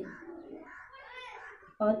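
Faint bird calls in the background, a few short curved calls during a lull.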